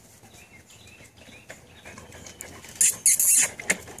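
A dog lapping water from a plastic bucket: a quick run of loud, wet slurps about three seconds in, with a few smaller laps after.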